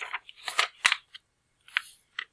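A large picture-book page being turned by hand: quick papery rustles, one sharp flap about a second in, and another short rustle near the end as the new spread is pressed flat.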